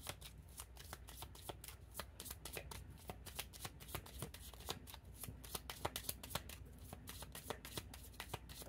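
A deck of oracle cards shuffled by hand: a fast, uneven run of light card clicks, several a second.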